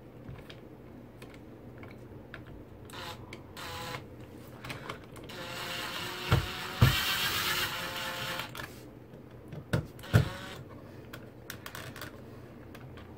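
Makita cordless drill with a driver bit running the mounting screws of an electrical outlet: a brief whir about three seconds in, then a run of about three seconds. A few sharp knocks fall during and after the longer run.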